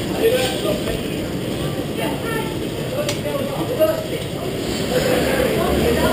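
Indistinct chatter of several people over a steady background din, with a sharp click about three seconds in and another near four seconds.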